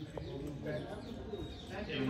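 Faint, indistinct voices with birds calling in the background; no single sound stands out.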